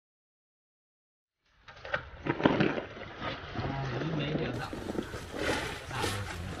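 Knocking and scraping on a barnacle-crusted steel pile as shellfish are worked off it by hand from a small boat, with a few sharp knocks over a low steady hum. The sound starts abruptly about a second and a half in.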